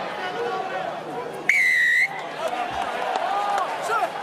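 A rugby referee's whistle: one steady shrill blast, about half a second long and a second and a half in, blown to stop play for a penalty against a player for going off his feet at the ruck.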